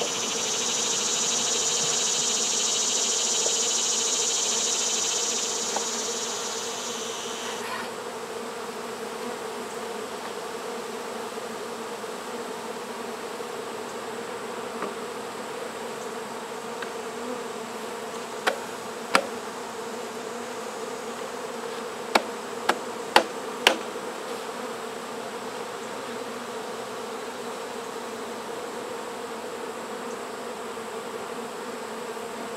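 Honeybees buzzing steadily in a swarm around an open hive, with a louder hiss over the first seven seconds or so that cuts off suddenly. About six sharp knocks come in two quick groups, around 18 and 22 seconds in.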